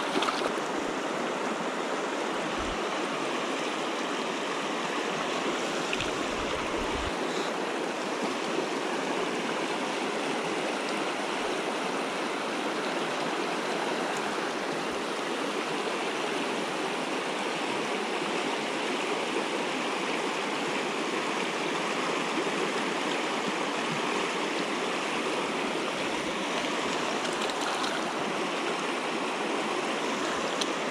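Steady, even rush of flowing stream water, a continuous hiss with no breaks.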